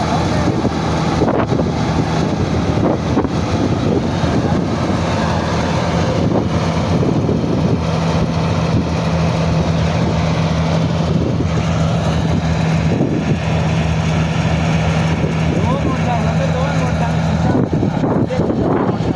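New Holland combine harvester running while it cuts standing wheat: a steady engine drone with a held low hum, which fades shortly before the end.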